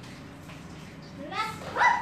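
Hot oil sizzling steadily in a frying pan, then from about a second and a half in a girl's short, rising high-pitched squeal as dough goes into the hot oil.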